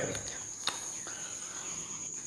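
A steady high-pitched whine over low room tone, with a single click about two-thirds of a second in.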